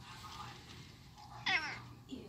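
A single short, high-pitched animal call with a falling pitch, about one and a half seconds in.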